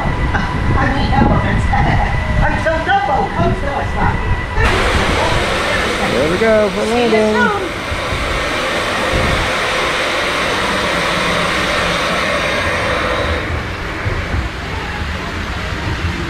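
Riding the Dumbo the Flying Elephant ride: voices at first, then about four and a half seconds in a steady rushing noise sets in and lasts about nine seconds before dropping away, with a short rising and falling voice-like cry near its start.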